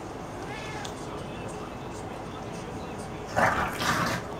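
English bulldog vocalizing while it wriggles on its back: a faint short squeal about half a second in, then a loud, rough burst of sound near the end as it starts to roll.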